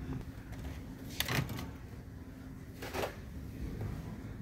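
Shopping cart rattling as it is pushed and its load shifts, with two brief clatters about a second and a half apart, over a steady low store hum.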